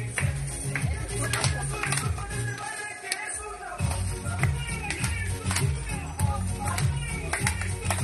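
Dance music with a steady beat and a strong bass line. The bass drops out for about a second near the middle, then comes back.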